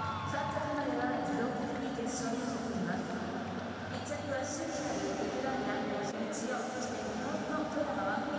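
Indistinct voices talking, with a few short clicks.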